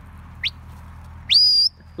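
Sheepdog handler's whistle commands: a short upward flick, then a longer note that sweeps up and holds high.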